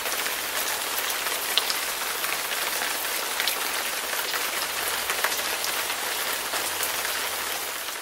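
A steady hiss with small scattered crackles, like rain falling on a surface, fading away at the very end.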